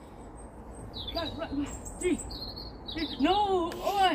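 Small birds chirping in the background, a few short high chirps, while children's voices call out and someone counts "three".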